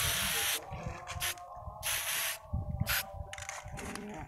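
Aerosol spray-paint can (pilox) hissing in several short bursts, the longest at the start, while a red distance marking is sprayed onto a concrete drain wall.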